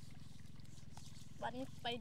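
A steady low rumble with a fast flutter, with a few faint spoken words in the second half.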